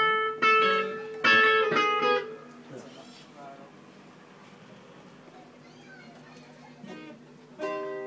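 Guitar played in the room: a handful of sharply struck chords that ring out in the first two seconds or so, then a quieter stretch with faint voices, and another chord struck near the end.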